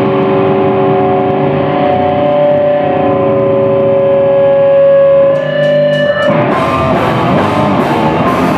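Live hardcore band: a distorted electric guitar holds a ringing chord for about six seconds. A few sharp drum hits follow, and the full band with drums comes back in near the end.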